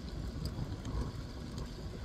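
Steady low rumble of outdoor wind noise on a phone microphone, with a few faint ticks.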